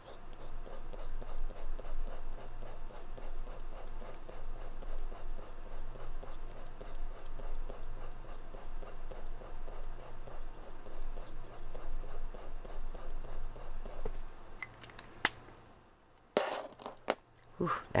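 Felt brush tip of a Pentel Sign Pen brush marker scrubbing back and forth on watercolor paper: a scratchy rustle of repeated strokes laying down a swatch. It stops about fourteen seconds in, followed by a short burst of louder clicks and rustling.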